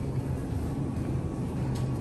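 Steady low hum of a supermarket aisle beside open refrigerated dairy cases, with no sudden sounds.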